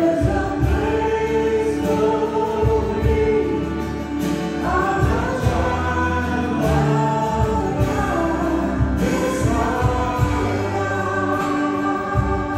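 Live church praise band performing a worship song: several voices singing together over acoustic guitar and drums.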